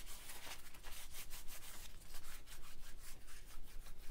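Hands rubbing and squeezing wet, crumpled packing paper, working glycerin into it: a rapid, irregular papery rustling and rubbing.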